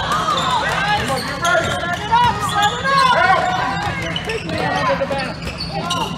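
Basketball dribbled on a hardwood gym floor, a run of bounces, with players and spectators calling out in the gym.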